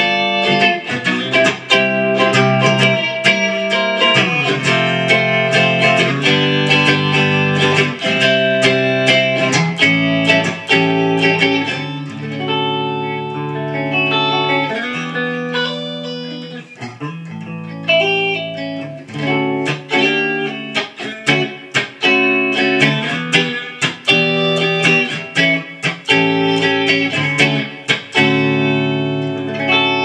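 Carvin CT-6 electric guitar played on the clean channel of a Marshall JVM 210H amp into a 4x12 cabinet: picked chords and notes ringing out, softer for a few seconds near the middle.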